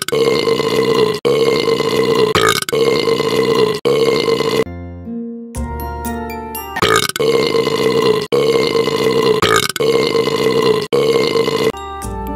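A burp sound effect repeated over and over in place of the song's sung vocals. Each long burp is held about a second and cut off sharply: four in a row, a short break, then four more, over backing music.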